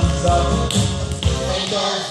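Children's tap shoes tapping on the floor during a tap routine, over a recorded song.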